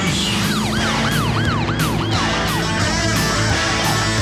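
Rock trailer music with guitar, over which a siren yelps in quick repeated rising-and-falling sweeps for about two and a half seconds, starting about half a second in.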